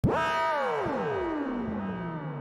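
Intro music effect: a synthesized tone that starts abruptly, holds for about half a second, then glides slowly down in pitch, with echoes repeating the downward slide as it fades.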